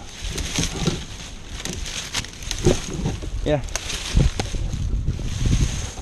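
Wind rumbling on a helmet-mounted camera microphone, with scattered small clicks and knocks from the climber moving among branches and gear, and a brief spoken "yeah" midway.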